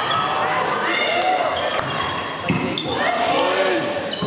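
Volleyball rally in a sports hall: the ball is struck several times, roughly a second apart, amid players' calls and shouts.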